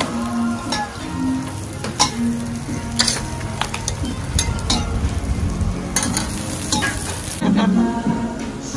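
Roti canai frying on an oiled flat griddle with a steady sizzle, while a metal spatula scrapes and taps the griddle in irregular sharp clicks as the breads are turned and pressed. Music comes in near the end.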